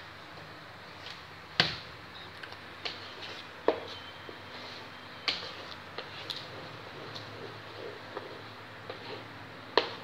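A wooden spatula stirring cooking pineapple jam in an aluminium wok, knocking and scraping against the metal at uneven intervals. Four knocks stand out from the smaller ones.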